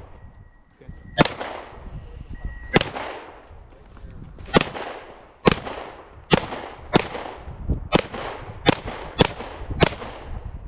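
A semi-automatic pistol fired ten times, each shot followed by a short echo off the range. The first shots come a second and a half or more apart, then the pace quickens to about one shot every half to three-quarters of a second near the end.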